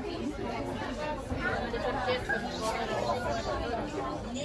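Chatter of many shoppers talking at once, overlapping voices with no single clear speaker, over a steady low rumble.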